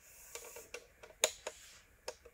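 Several light clicks and ticks over a soft hiss, the loudest about a second and a quarter in.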